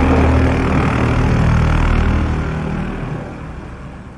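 Channel intro sound effect: a loud, dense rushing rumble with a heavy low end that fades away over the second half.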